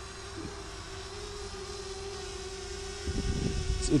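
DJI Spark drone hovering and flying with a steady single-pitched propeller hum, with a low rumble near the end.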